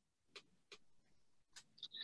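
Near silence on a video call line, broken by a few faint, scattered clicks.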